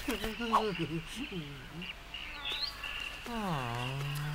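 A cartoon badger's voice moaning a long 'ah...' about three seconds in, its pitch falling and then holding steady, after a few short vocal sounds. Behind it is a forest backdrop of bird chirps and a steady high-pitched tone.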